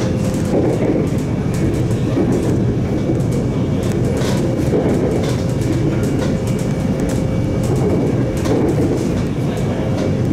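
Interior ride noise of a Melbourne High Capacity Metro Train carriage running along the line: a steady rumble of wheels on rail, with scattered short clicks and a faint steady hum.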